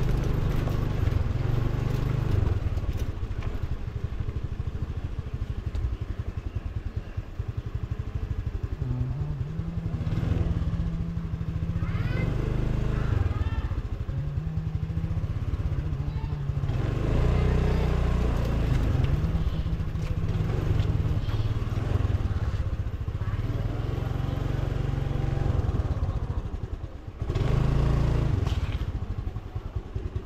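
Motor scooter's small engine running as it is ridden slowly, its note stepping up and down with the throttle.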